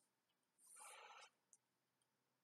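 Near silence: room tone, with one faint short sound a little over half a second in and a tiny click just after it.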